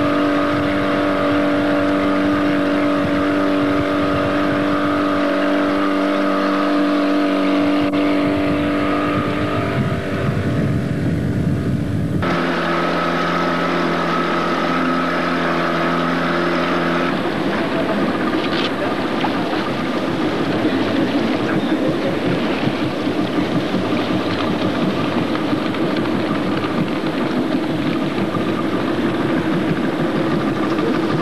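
Motorboat engine running steadily at cruising speed, with water noise. Its pitch and tone change abruptly twice, about twelve and seventeen seconds in, where the recording is cut; after the second cut the engine is more buried in rushing noise.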